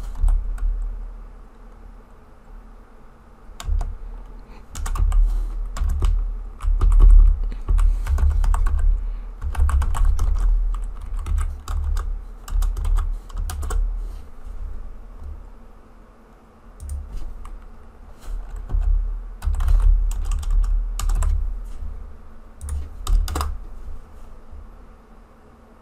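Typing on a computer keyboard in irregular bursts of key clicks, with low thuds carried with the keystrokes and a few short pauses between bursts.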